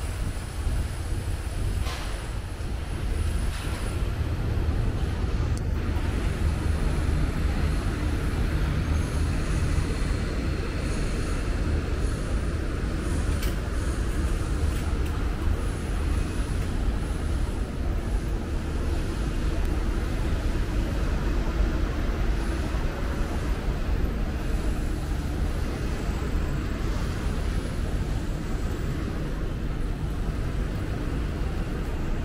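Steady city street ambience dominated by a low rumble of road traffic.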